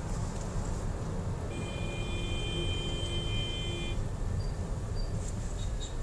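Steady low rumble of a car driving in slow city traffic, heard from inside the cabin. From about one and a half seconds in, a steady high electronic tone sounds for about two and a half seconds, then stops.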